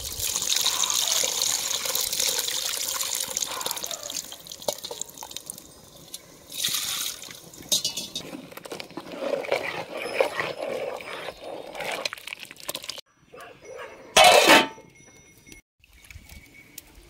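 Tamarind water streaming and splashing into a pot of sambar as soaked tamarind pulp is squeezed by hand, loud for the first few seconds. Then come softer, broken pours and splashes. A brief loud burst comes about fourteen seconds in.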